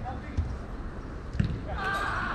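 Two dull thuds of a football being kicked, about a second apart, with players shouting near the end.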